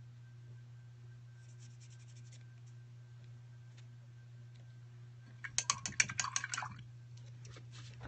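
A steady low hum, with faint clicks about a second and a half in and a louder flurry of quick clicks and rustling about five and a half seconds in, as brushes and painting supplies are handled on the work table.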